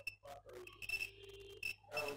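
Multimeter continuity buzzer beeping on and off in a high steady tone as its probes touch the generator rotor's two slip rings, with faint clicks of probe contact. The beep signals continuity through the rotor winding, so the rotor is not open-circuit.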